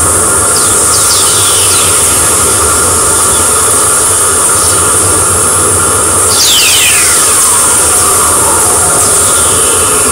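Whistlers from the Polar satellite's Plasma Wave Instrument wideband receiver: VLF radio waves from lightning, played as audio. They are falling whistling tones over a loud, steady hiss, a few faint ones in the first two seconds and one strong one about six seconds in.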